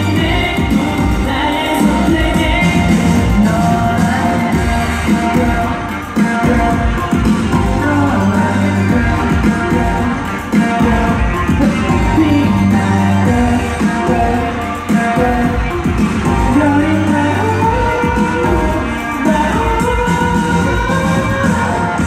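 Live K-pop concert: a boy group singing a pop song over loud, amplified backing music with a steady beat, heard through the echo of a large arena.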